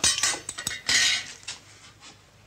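Small metal and glass items clinking and clattering on a washstand top as they are handled. There are a few brief bursts, the loudest about a second in.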